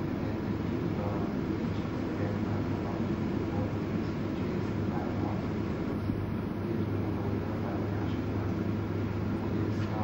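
Steady room noise: a constant low hum under an even hiss, with faint, indistinct murmured voices now and then.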